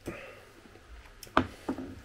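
A breath let out after a swallow of beer. Then a clear beer glass is set down on a table: a sharp knock, followed by a lighter second knock.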